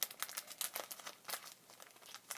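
Trading-card booster packet wrapper crinkling and tearing as it is worked open by hand, a run of irregular small crackles.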